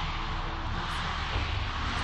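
Steady crowd din filling an indoor volleyball arena, an even wash of many voices and noise with no single sound standing out.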